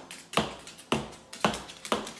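Moluccan cockatoo knocking its beak on a granite countertop: four sharp knocks about half a second apart, each ringing briefly.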